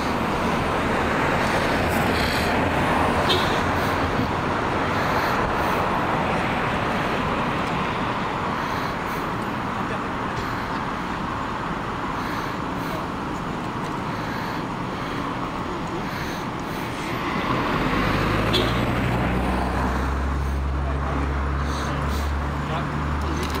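Road and vehicle noise: a steady rushing sound of traffic, then, from about three-quarters of the way through, a vehicle engine running close by with a low, steady hum.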